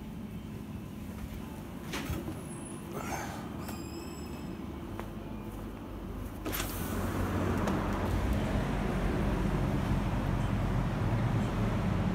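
Quiet shop interior noise with a few clicks while walking through a petrol-station store. About six and a half seconds in, a click as the glass entrance door opens, then a louder, steady low outdoor rumble of traffic and wind on the microphone.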